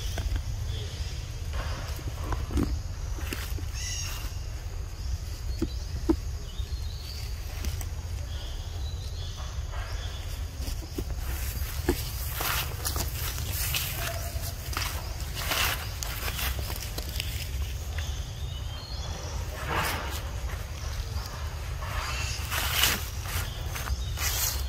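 Footsteps and rustling through leaf litter and undergrowth: irregular brief crackles over a steady low rumble.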